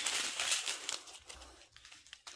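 A strip of small plastic bags of diamond-painting drills crinkling as it is handled; the rustle dies away after about a second.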